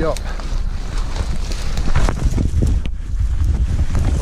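Wind rumbling on the microphone of a body-worn camera, with a few crunches and knocks as a person steps through snow and alder branches.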